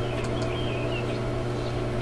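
A steady low hum of room noise, with a faint short high chirp a little under a second in.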